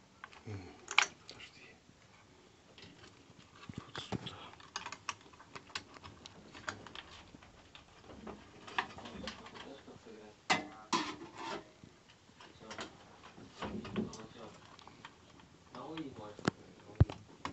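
Scattered sharp clicks and rattles of plastic wiring connectors being plugged onto a gas boiler's control board and the board's plastic housing being handled, loudest about a second in and again around ten to eleven seconds in.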